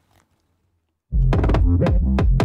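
Hip-hop drum beat played back from a production session, coming in about a second in after near silence: a deep 808 bass and kick with sharp hi-hat and snare strikes on top.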